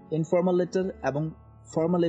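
A man speaking in Bengali over quiet background music, with two short runs of speech and a brief gap between them.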